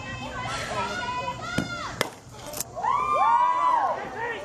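A softball bat strikes the ball about two seconds in, a sharp crack with a brief high ring. Spectators' voices run throughout, and one long loud shout of cheering follows the hit.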